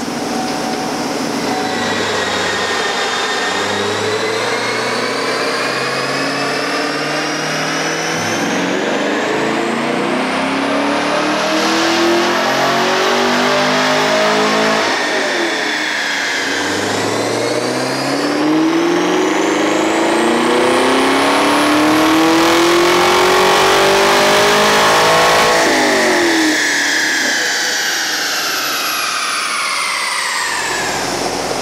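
6th-gen Chevrolet Camaro V8 on a chassis dyno, accelerating hard through the gears: the engine note climbs, drops at two upshifts, then climbs in one long, loudest full-throttle pull before falling away as the throttle is released. It is a baseline power run on the dyno rollers.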